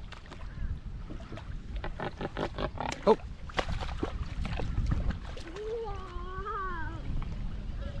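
Australian pelican lunging into shallow water after a fish: a quick run of splashes and wing-flaps about two to four seconds in, with wind rumbling on the microphone.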